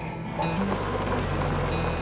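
A pickup truck driving in: a steady engine and tyre rumble that comes up about half a second in, under background music.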